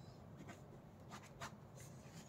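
Faint scratching of a pen writing on paper, in a few short strokes.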